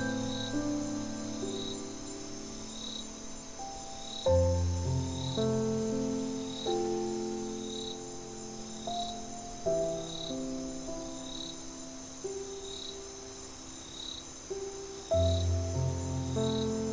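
Slow, gentle solo piano playing sustained chords, with a deep bass chord struck about every five to six seconds, over crickets. The crickets give a steady high trill and a short chirp repeating about every second and a quarter.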